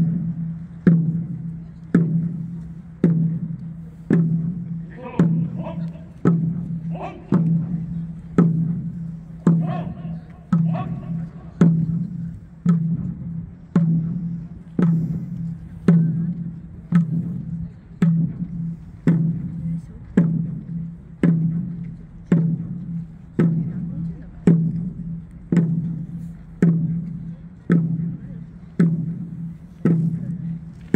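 A large ceremonial drum beaten at a steady march pace, one stroke about every second, each stroke ringing low and dying away before the next.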